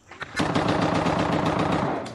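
Automatic gunfire: one long, rapid, unbroken burst of machine-gun fire, starting about half a second in.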